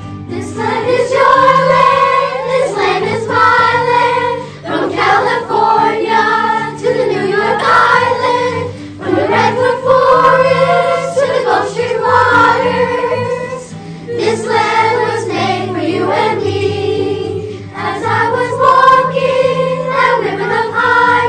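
Children's choir singing together in phrases of a few seconds, with short breaks for breath, over low sustained accompaniment notes.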